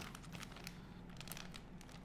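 Clear plastic zip bag crinkling as it is handled, with the wiring harness inside shifting: a faint, irregular run of rustles and small clicks.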